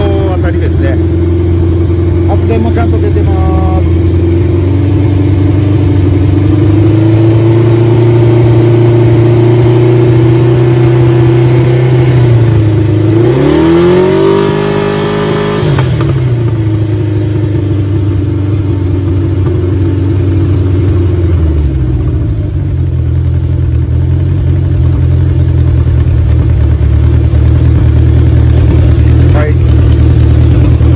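Honda CB750 K4's air-cooled inline four running steadily. About halfway through, the revs climb sharply and fall back within a few seconds, with a shorter dip and recovery a few seconds later.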